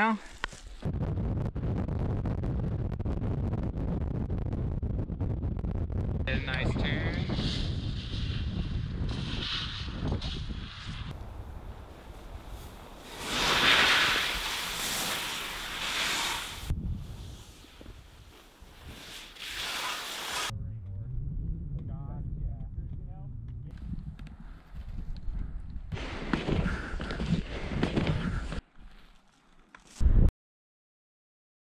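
Wind buffeting the microphone, then skis hissing and scraping through snow in a loud rush of several seconds near the middle.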